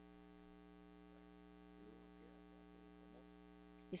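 Near silence with a steady electrical hum, a ladder of constant tones, in the broadcast audio feed; a faint voice is heard under it around the middle, and speech starts at the very end.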